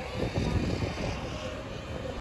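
Electric motor and propeller of a homemade foam RC plane in flight, a steady distant buzz mixed with wind noise on the microphone.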